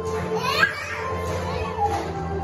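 Taishōgoto ensemble playing, its amplified notes held as steady sustained tones. A high voice from the audience rises briefly about half a second in, with a shorter one near the end.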